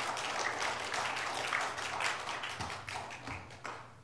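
Congregation applauding, a dense patter of many hands clapping that thins out and fades near the end.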